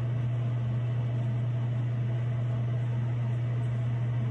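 A steady low hum with a faint hiss over it, unchanging throughout, from a machine running in a small room.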